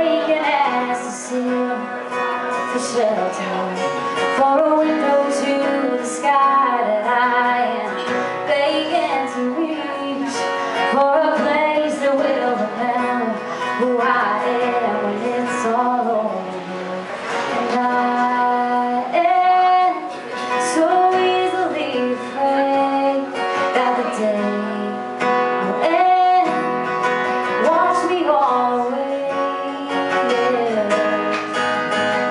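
A woman singing a song live into a microphone, accompanying herself on a strummed Epiphone acoustic guitar.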